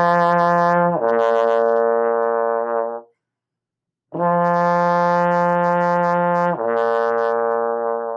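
Trombone in first position playing a lip slur from F down to the low B flat, twice. Each time a held F drops cleanly to the B flat without the slide moving: the first F slurs down about a second in and ends near 3 s, and after a second's pause the second F comes in and slurs down again about 6.5 s in.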